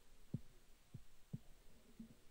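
Near-silent room tone with three short, faint low thumps in the first second and a half.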